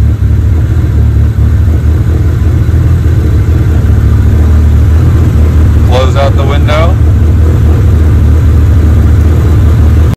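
Tomei 2.2-litre stroker SR20DET turbocharged four-cylinder engine idling with a steady, loud low hum.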